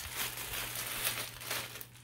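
Clear plastic packaging bag crinkling as it is handled, a dense irregular crackle.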